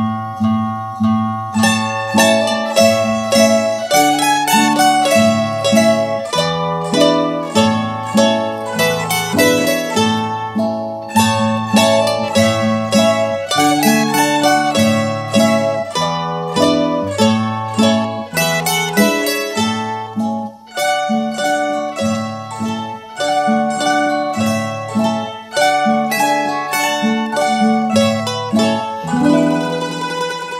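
Ensemble of mandolins playing a tune in evenly paced plucked notes over a repeating lower bass line. It closes on a chord that rings out and fades near the end.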